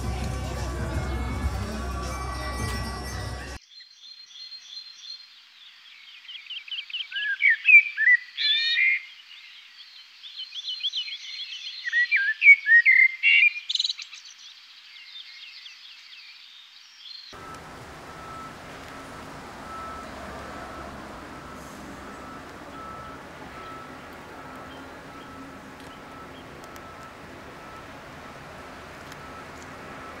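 Music and crowd noise for the first few seconds, cutting off abruptly. Then birds chirping, with quick upward-sweeping notes in two loud flurries. About seventeen seconds in this gives way to a steady outdoor background hiss with a faint thin high tone.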